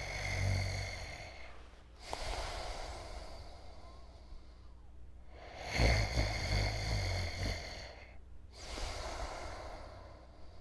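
A man snoring in his sleep: two rattling snores, each followed by a long breath, repeating about every five to six seconds.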